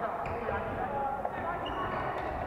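Badminton play on wooden courts in a large echoing hall: a sharp racket-on-shuttlecock click about a quarter second in and a short high shoe squeak near the end, with footsteps on the floor, over steady chatter from players around the hall.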